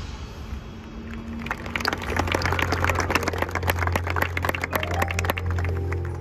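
Audience in the stands applauding, the clapping building about a second and a half in and fading near the end, over a low sustained note from the band.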